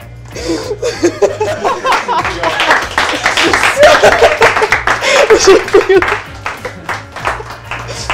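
A small group clapping, with voices and laughter, over background music; the clapping is thickest from about two to six seconds in.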